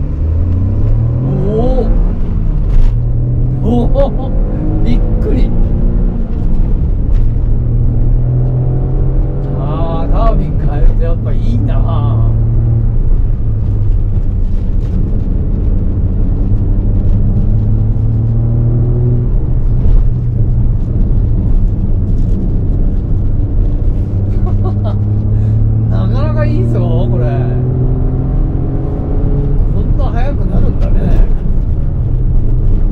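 Spoon-tuned Honda N-ONE's turbocharged 660 cc three-cylinder engine pulling through the gears of its manual gearbox, heard from inside the cabin. Its note revs up sharply at the start, then climbs slowly and drops back repeatedly as it changes gear.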